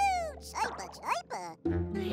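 High-pitched squeaky cartoon calls from a Vegimal, sliding down and then up in pitch, over background music that drops out briefly near the end.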